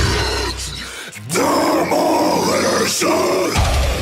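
Heavy metal intro music with a harsh, growled vocal: the low bass drops out about a second in for a long growl, then comes back near the end.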